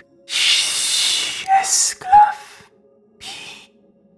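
A whispered voice: a long breathy hiss, then two short whispered sounds and a faint last breath, over a low steady drone of background music.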